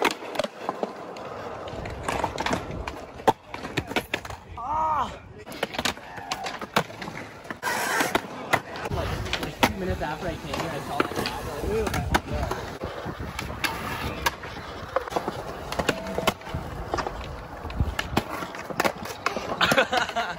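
Skateboard wheels rolling on smooth concrete, with many sharp clacks of boards popping, landing and slapping the ground.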